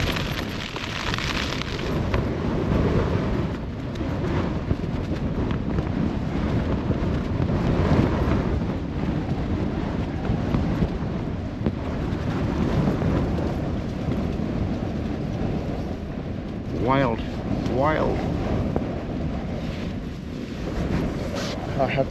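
Storm wind gusting against a Soulo BL tent, heard from inside: a loud, unbroken rushing that swells and eases with each gust as the fabric is buffeted.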